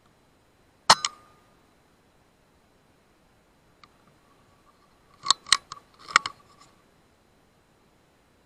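A single shot from a .25 BSA Scorpion SE pre-charged air rifle about a second in: a sharp crack followed a split second later by a smaller one, the pellet striking the rat. About four seconds later comes a quick run of sharp clicks.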